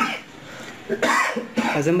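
A man coughs twice in short bursts, once right at the start and again about a second later, then begins speaking near the end.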